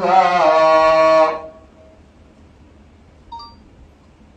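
A man's voice chanting a devotional milad line in a sliding, drawn-out melody, ending on a held note about a second and a half in. After that only room noise, with one short faint beep a little after three seconds.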